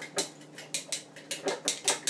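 A spoon stirring a drink in a glass jar, clinking against the glass in a quick, even rhythm of about five strokes a second.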